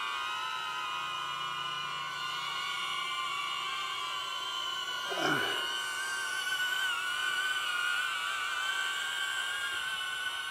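Two small quadcopter drones, a DJI Neo and a HOVERAir X1, hovering and climbing: their propellers give a layered high-pitched whine of several steady, slightly wavering tones. About five seconds in there is a brief sweep that falls steeply in pitch.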